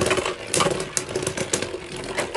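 Two Beyblade Burst tops, Super Hyperion and Union Achilles, spinning against each other in a plastic stadium: a fast, continuous clicking rattle as they grind and clash, with a few sharper hits.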